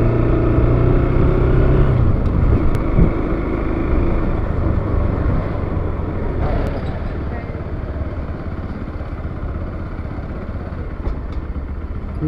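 Bajaj Pulsar NS200's single-cylinder engine running while ridden, with a steady note for about the first two seconds, then easing off and growing gradually quieter.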